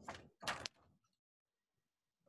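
Two brief noisy bursts, something moved or knocked near a microphone on a video call, both within the first second.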